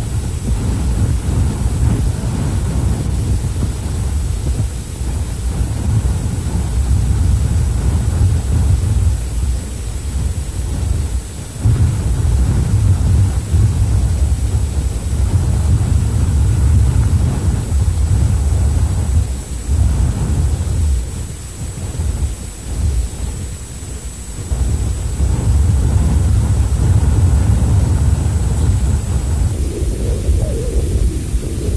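Wind buffeting the microphone outdoors: a deep, rumbling noise that rises and falls in gusts, dropping out briefly a little before halfway and easing for a few seconds past two-thirds through. A faint, steady high whine sits above it.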